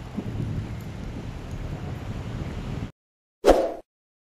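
Outdoor ambience with a steady low rumble that cuts off abruptly about three seconds in. Half a second later comes a single short, loud sound effect from a subscribe-button animation.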